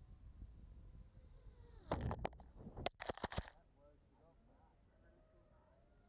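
A quick cluster of sharp knocks and clatters lasting about a second and a half, about two seconds in: a small quadcopter striking a golf cart and its GoPro camera being knocked off and tumbling into pine needles on the ground.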